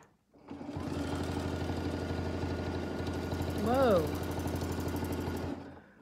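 Sewing machine stitching steadily with rapid, even needle strokes, starting about half a second in and stopping shortly before the end. It is sewing a template-guided quilting line. A brief vocal sound rises and falls over it about four seconds in.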